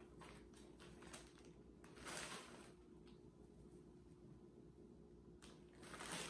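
Faint rustling of a large plastic zip-top bag of cleaned beeswax flakes being handled and opened, with two brief crinkles, one about two seconds in and one near the end, and a few light clicks. Otherwise near silence.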